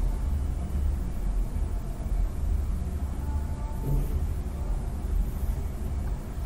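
A low, steady background rumble, with no speech.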